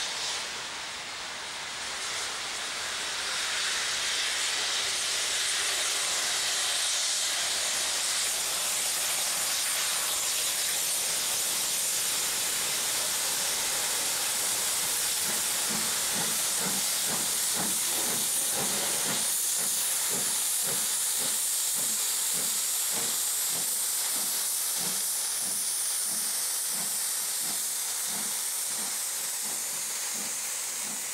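Double-headed LMS steam locomotives, a Black Five and a Jubilee, passing slowly: a steady loud hiss of steam, joined about halfway by a regular beat of roughly two a second as the train runs by.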